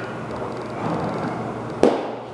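A single sharp crack near the end, over a steady background din of a large room.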